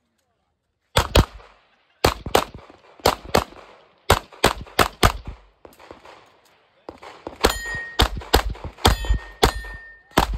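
Rapid 9mm pistol fire in quick pairs of shots, starting about a second in after a brief silence. Near the end the shots come faster and a steel target rings.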